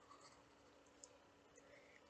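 Near silence, with a few faint, short ticks of a graphite pencil on a sketchbook page as spots are drawn.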